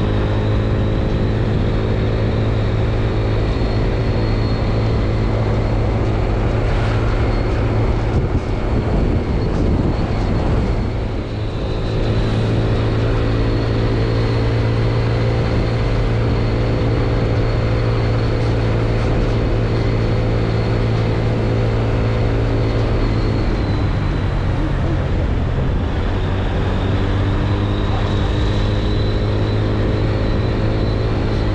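Vehicle engine and road noise while driving at a steady speed, a continuous low drone that dips briefly about a third of the way in and shifts in pitch later on.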